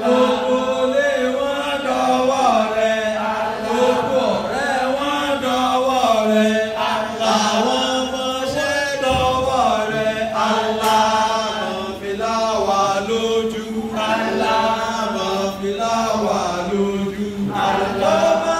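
Chanted singing with music, going on without a break, played for dancing.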